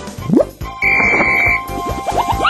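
Cartoon sound effects over children's background music: a quick rising glide, then a steady high whistle-like tone lasting under a second, then a run of quick rising zips near the end as the hare sets off running.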